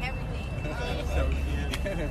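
Several people talking close by over a steady low rumble that swells about a second in.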